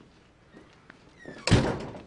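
A door bangs once, loudly and suddenly, about one and a half seconds in, and the sound dies away within half a second. A few faint ticks come just before it.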